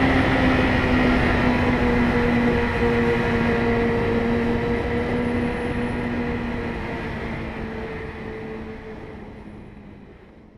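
Kawasaki ZX-6R inline-four sport bike engine heard on board at high, near-steady revs, with wind rush, the note sagging slightly. It fades out over the last few seconds.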